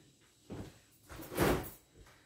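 A soft knock, then a louder short dull thump about a second and a half in: household knocking as a door or cupboard is handled.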